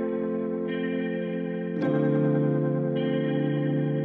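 Background music: slow, held chords with an effects-laden sound, changing chord about two seconds in.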